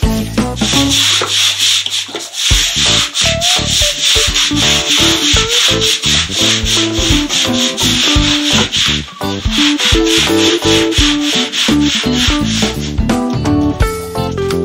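A brush scrubbing a wet, soapy concrete pen floor in quick repeated strokes, cleaning off stuck-on dung, with guitar-backed music playing over it.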